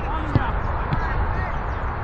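A single dull thud of a football being kicked, about a third of a second in, over a steady low rumble and faint distant voices.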